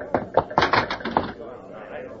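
Hurried footsteps on a hard floor, a quick run of sharp steps in the first second or so, then fading off.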